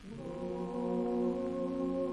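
A male vocal ensemble holding a sustained chord in several parts. The chord comes in just after the start, with the lowest voice sliding up into its note, then holds steady.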